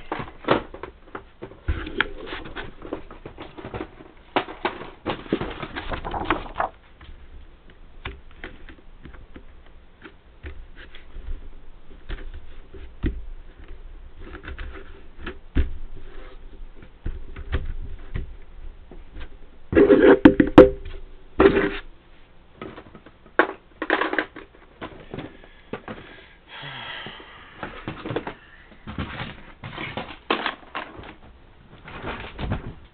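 Paper rustling and crinkling with irregular clicks and taps as a paper cover is handled and pressed down flat by hand onto a spiral notebook, the handling loudest for a couple of seconds about twenty seconds in.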